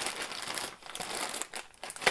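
Thin plastic bags crinkling and rustling as hands handle them and take a snagless boot out.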